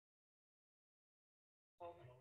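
Near silence, broken near the end by a brief pitched voice sound from a person.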